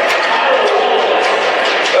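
Indistinct voices filling an ice hockey arena, with no clear words.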